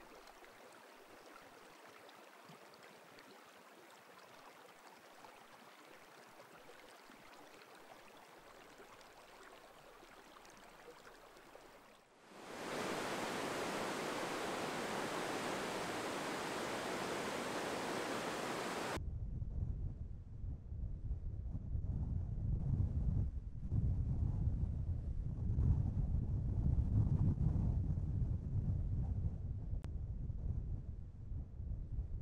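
Faint, steady hiss of slow water in a snow-covered stream; about twelve seconds in it gives way to the much louder, steady rush of a river running through ice and snow. After about nineteen seconds this is replaced by low, gusting wind buffeting the microphone.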